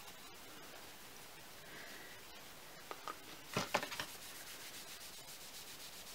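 A tissue rubbing on the back of a cardboard eyeshadow palette to wipe off a smear of eyeshadow. It is faint, with a few louder scrubbing strokes about halfway through.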